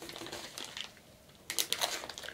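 A resealable plastic pouch of hard wax beads being handled at its zip seal, giving small crinkles and clicks that bunch together in the last half second.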